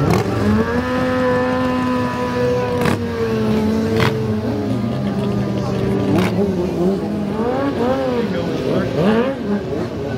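Motorcycle engines revving during stunt riding: one engine held steady at high revs for about four seconds, then quick rises and falls in pitch as the throttle is worked. A crowd talks underneath.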